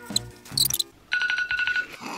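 Electronic timer alarm beeping rapidly, a short run of high beeps at about ten a second starting about a second in, which marks the end of the timed round. Background music plays underneath.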